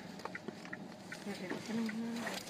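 Faint handling noise and small clicks in a phone recording. Near the end a muffled voice holds a long sound.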